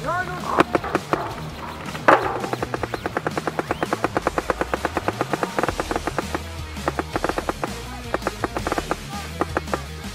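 Paintball marker, a Planet Eclipse Etek 3, firing: a single sharp shot about two seconds in, then a fast even string at about nine shots a second for several seconds, then shorter bursts near the end. Background music runs underneath.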